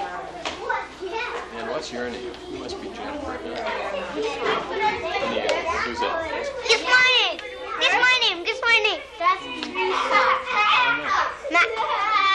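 Young children talking and calling out over one another, several voices at once. High children's voices rise and fall in pitch, growing louder in the second half.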